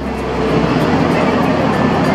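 Street traffic noise: a steady low rumble of cars with general city hum.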